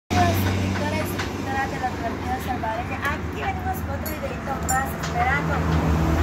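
High-pitched voices in short, animated bursts over a steady low hum.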